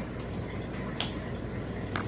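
A single short, sharp click about a second in, over steady low room noise.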